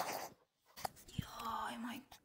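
A woman speaking softly, almost in a whisper, with two small clicks from handling a clip-on microphone about a second in.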